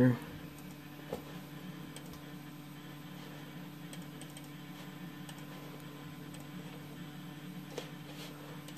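A few scattered, faint computer mouse or keyboard clicks over a steady low hum.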